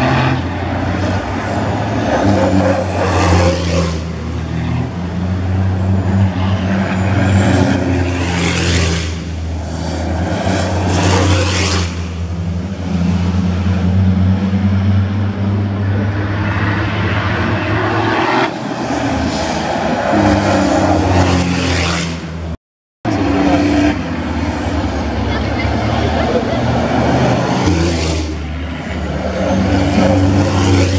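Racing trucks' diesel engines running hard on the circuit, their drone swelling and easing as the trucks come down the straight, with a brief total cut-out about two-thirds of the way through.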